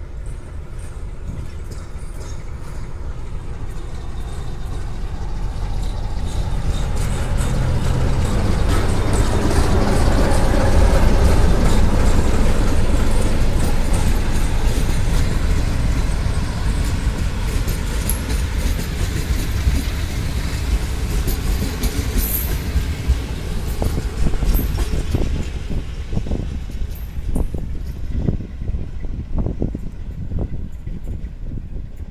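Diesel-electric locomotive running under load as it pulls a passenger train past, growing louder to a peak about a third of the way in and then fading as it moves away. Near the end the coach wheels click over the rail joints.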